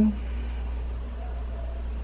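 A steady low hum under faint room noise, with no distinct handling clicks.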